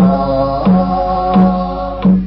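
A song: a voice singing long held notes over a steady low beat that falls about every two-thirds of a second.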